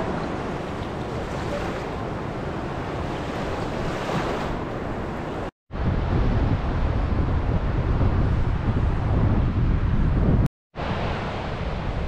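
Small sea waves washing up over a sandy shore, then wind buffeting the microphone in a low rumble. The sound cuts out briefly twice, about five and a half and ten and a half seconds in.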